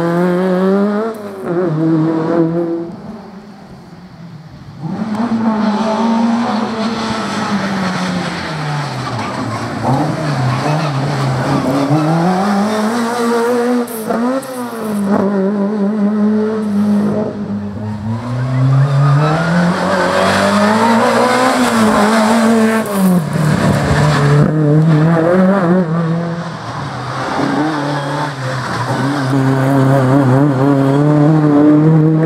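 Group A 2-litre class race car's engine revving hard, its note climbing and dropping again and again as it accelerates, brakes and shifts through a cone slalom. The sound drops away briefly about three seconds in, then picks up again.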